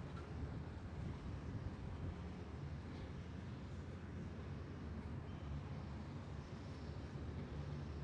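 Faint, steady low rumble of outdoor background noise with no distinct events.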